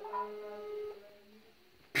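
Telephone ringback tone heard from a mobile phone's earpiece: one steady beep about a second long, the sign that the call has gone through and the other phone is ringing.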